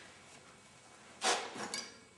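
Bicycle front wheel being slid out of the suspension fork dropouts after the quick-release is loosened: a short scrape about a second in, then a light metallic clink.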